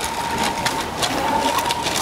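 Thin plastic bag crinkling and rustling in a quick irregular crackle as hands squeeze liquid molasses out of it into a plastic container, over a faint steady whine.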